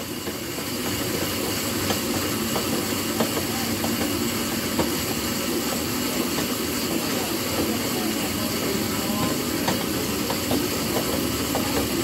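Steady whirring of arm-crank ergometers spun hard in a sprint interval, with a few faint clicks.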